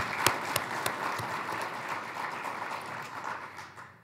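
Audience applauding, a steady patter of many hands clapping that dies away toward the end.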